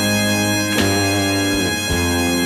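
Live band playing an instrumental passage: steady, droning held chords over bass, with a single drum hit a little under a second in.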